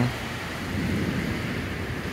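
Steady rain hiss with a low rumble underneath.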